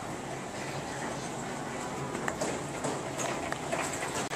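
Grocery-store room tone: a steady ventilation hum with faint distant voices and a few light clicks, likely footsteps or handling noise.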